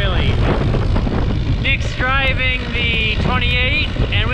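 Steady low rumble of a tractor towing a baler and a loaded hay wagon along a paved road, heard from on top of the wagon. A man's voice with drawn-out, gliding tones comes in about halfway through.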